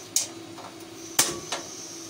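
Gas stove burner being lit: two sharp igniter clicks about a second apart, then a fainter click, over a steady background hum.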